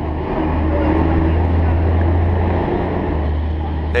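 Steady low engine rumble with street traffic noise, the low hum shifting pitch a couple of times and briefly dropping out near the end.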